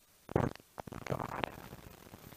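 Two brief low, throaty vocal sounds from a man at a close microphone, without words: one short loud one about a third of a second in, and a weaker one about a second in.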